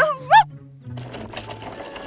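A short cartoon voice exclamation at the start. From about a second in comes a steady rattling sound effect of a pedal go-kart that is struggling to get going, over background music.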